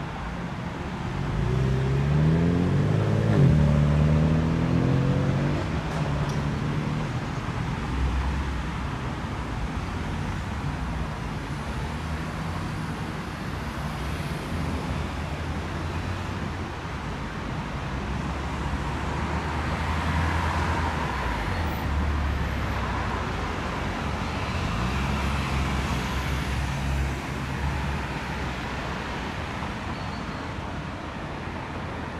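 Road traffic: a steady low rumble of passing cars, with one vehicle's engine rising in pitch as it accelerates a couple of seconds in, the loudest moment.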